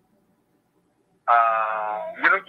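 Silence for about a second, then a man's voice begins a long, steady held 'aah' hesitation sound, running on into speech.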